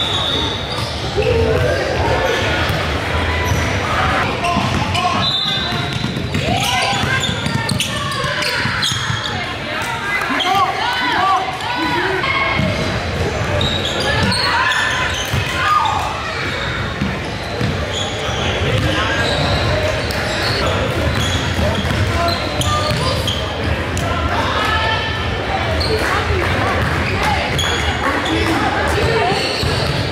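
Live basketball game sound in a gym: a ball dribbling and bouncing on the hardwood, with players' and spectators' voices echoing in the hall.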